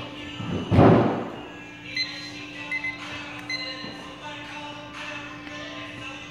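A single loud thud about a second in, fitting a dumbbell knocking against the metal dumbbell rack as a pair is taken off it, over steady background music.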